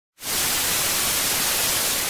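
Television static sound effect: a steady hiss of white noise that cuts in sharply just after the start.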